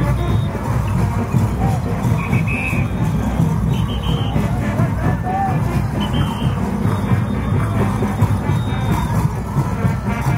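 Loud, continuous band music with crowd voices mixed in.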